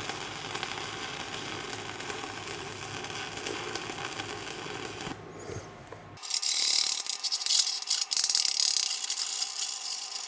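Stick-welding arc of an eighth-inch 7018 rod run at 95 amps, a steady, smooth crackle that stops about five seconds in. About a second later comes loud, choppy metal-on-metal scraping and knocking as slag is cleaned off the fresh fillet weld with a chipping hammer and wire brush.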